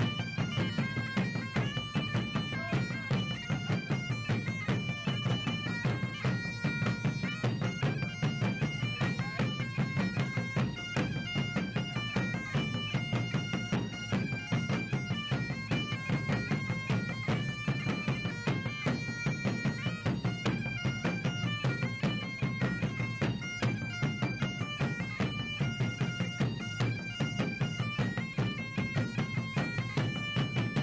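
Bagpipe music: a steady low drone under a melody that steps between held high notes, with an even pulse throughout.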